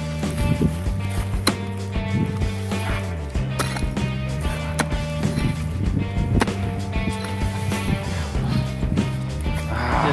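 Background music with steady chords, over irregular sharp knocks of a pickaxe striking hard, dry ground.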